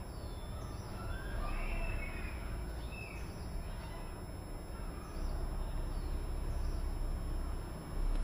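Faint bird chirps, a few short rising and falling calls in the first three seconds and fainter ones later, over steady low background noise.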